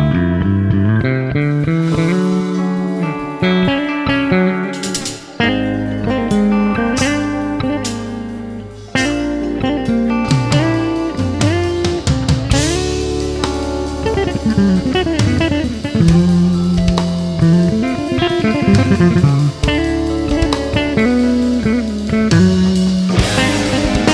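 Live instrumental rock band playing: an electric bass carries a fast melodic line with slides over drums, electric guitar and keyboards. The drums fill in more heavily about five seconds in, and the band builds up again around twelve seconds.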